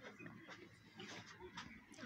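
Near silence, with a few faint soft clicks.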